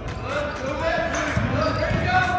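A basketball bouncing on a hardwood gym floor during play, with the voices of players and spectators around it.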